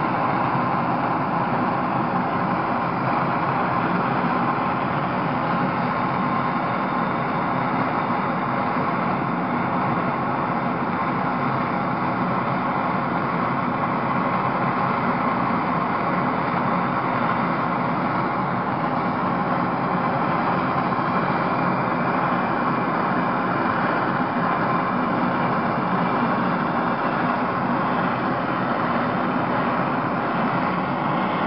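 MAPP gas blow torch flame burning steadily, turned up high, a constant rushing hiss with no break.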